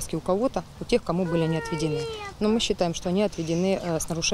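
A woman speaking, with one long drawn-out vowel a little after a second in.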